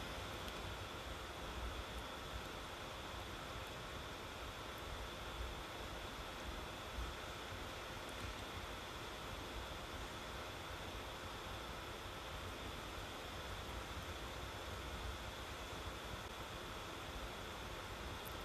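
Faint steady hiss of room noise, with no distinct breaths or other sounds standing out.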